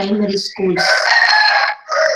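A loud bird call lasting about a second, with a few steady tones over a rough, noisy sound, coming just after a brief moment of speech.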